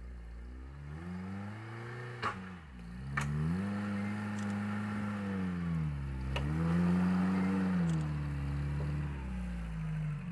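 Toyota Land Cruiser 70-series' engine working under load as the lifted 4x4 crawls over rock, its revs rising and falling several times. Three sharp knocks come through, in the first half and around the middle.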